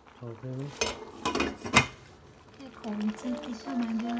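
Dishes and utensils clinking: several sharp clinks in the first two seconds, with a voice heard around them.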